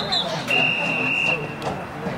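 Referee's whistle blasts on a football field: a short high blast just at the start, then a lower, steadier blast lasting under a second, about half a second in.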